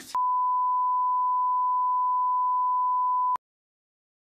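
A single steady, pure electronic beep tone held for about three seconds at an unchanging pitch, then cut off suddenly.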